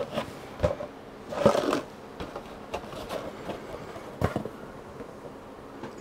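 Cardboard Milk-Bone biscuit box being handled and its flaps pulled open: a few scattered sharp knocks and clicks, and a brief rustle about a second and a half in.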